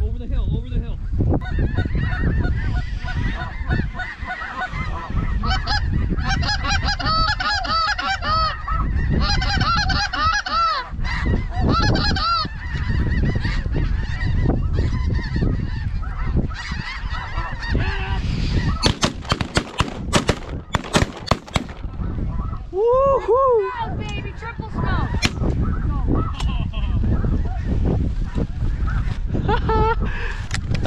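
A flock of snow geese calling overhead, a dense chorus of high, yelping honks. About two-thirds of the way through comes a rapid run of sharp shotgun blasts, followed by a few loud honks from a nearer goose.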